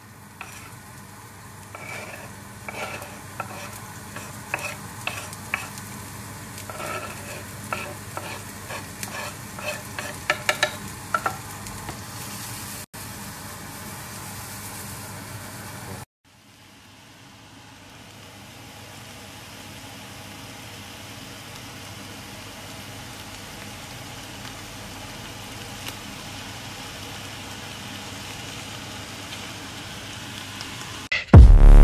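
Chopped onions sizzling in a hot frying pan, with scraping and a run of clicks and knocks from the wooden board and utensil against the pan over the first dozen seconds. After a brief break about halfway through, a steady sizzle of frying.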